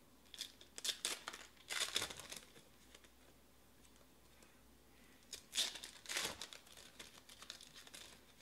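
Foil trading-card packs being crinkled and torn open by hand, in three bursts of rustling: about a second in, about two seconds in, and again from about five and a half to six and a half seconds in.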